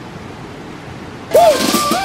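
Faint, steady arena ambience, then about one and a half seconds in a sudden loud rush of noise with a few shouts in it, as a platform diver enters the pool.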